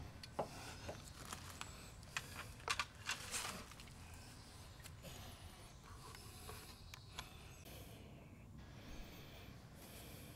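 Faint clicks, small knocks and scrapes of hands and tools handling an outdoor faucet and its metal pipe fittings, a few in the first three seconds or so, over a low, steady background.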